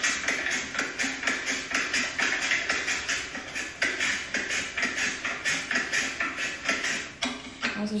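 Carrot pushed down through a handheld vegetable slicer, each slice cut with a crisp crunch in a rapid, even run of about four a second, with a brief pause about halfway.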